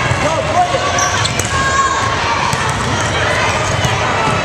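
Volleyball being struck back and forth during a rally, several short hits, with voices of players and spectators calling and talking around the reverberant gym.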